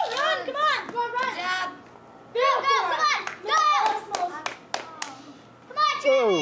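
Children shouting and calling out in high voices, with a few sharp claps between about three and five seconds in.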